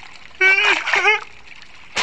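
A cartoon character's wordless voice: two short pitched vocal sounds about half a second and a second in. A sudden burst of noise comes at the very end.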